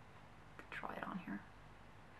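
A woman's voice briefly whispering a few words under her breath, about half a second in and lasting under a second, over quiet room tone.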